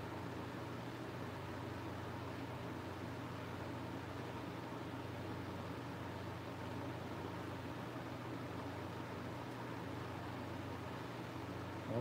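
Electric fan running steadily: an even whoosh with a low hum underneath.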